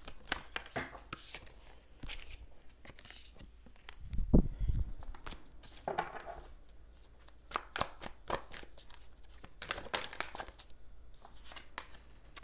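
Tarot cards being handled and shuffled: a run of quick, sharp snaps and flicks of card stock, with a dull thump about four seconds in.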